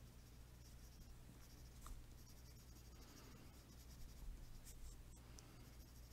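Faint scratching of a coloured pencil on paper, short shading strokes that build up texture, a little louder twice mid-way.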